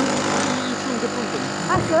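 Low talk between two people over a steady mechanical hum.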